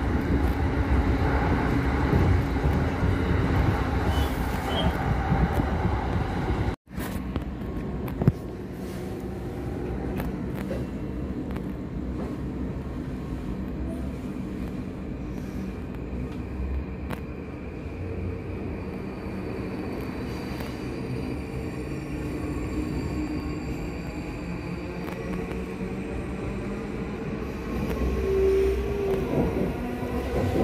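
Running noise of a JR electric commuter train heard from inside the car: a steady rumble of wheels on rail with a faint motor hum. About 7 s in the sound cuts out for an instant and comes back quieter and steadier, then grows louder again near the end.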